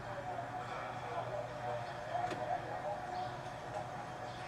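Muffled, indistinct voices from arrest footage being played back over room speakers, with a steady low hum. A single sharp click comes a little past two seconds in.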